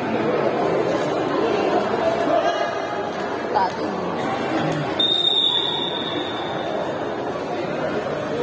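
Crowd chatter and voices in a sports hall. About five seconds in comes one long, high referee's whistle blast, fading over about a second, as the break ends and play resumes.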